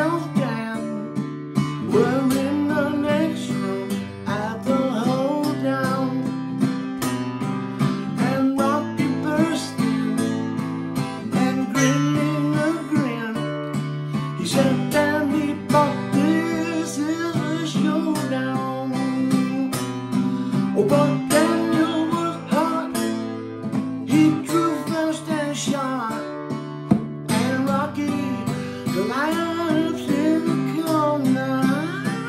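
A country song played on a Gibson acoustic guitar: steady strummed chords with bending melody lines above them.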